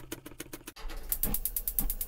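Chef's knife rapidly mincing garlic on a wooden cutting board: a quick, even run of blade taps, growing louder and faster from about the middle, at roughly ten taps a second.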